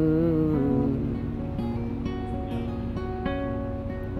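Solo acoustic guitar and a man's voice: a held sung note wavers and ends about half a second in, then the steel-string acoustic guitar carries on alone, strummed in a steady rhythm between sung lines.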